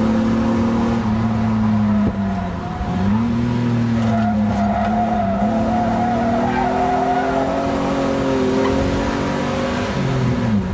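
Ford Sierra XR4x4 heard from inside the cabin on track, its engine holding a steady pitch, dipping as the throttle is lifted about two seconds in, then picking up again. Through the middle a wavering tyre squeal sounds as the car slides sideways in a small off.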